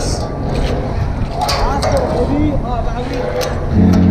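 Footsteps knocking on metal stairs and decking, with voices nearby over a steady low rumble. Near the end a loud, deep ship's horn starts and holds.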